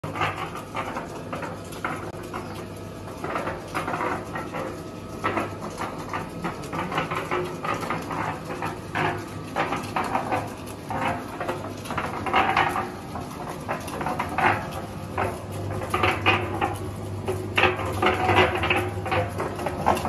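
Electric mini concrete mixer running: a steady motor hum with irregular knocks and clatter that grow louder and busier near the end.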